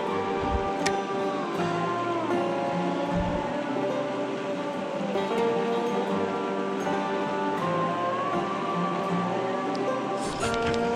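Background music led by guitar, with held notes that bend in pitch.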